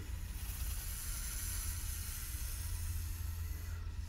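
A quiet, steady low hum with a faint hiss over it; nothing starts or stops.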